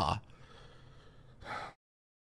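The tail of a man's word, then a short sharp breath out through the nose close to the microphone about a second and a half in, after which the sound cuts off to dead silence.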